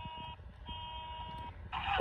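Electronic car-horn sound played through the built-in speaker of a Mirana remote-control toy car, triggered from the remote's horn button: a short honk, then a longer one lasting under a second.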